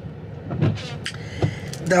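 Steady low rumble of a running car heard from inside the cabin, with a couple of brief soft noises, and a woman's voice starting just at the end.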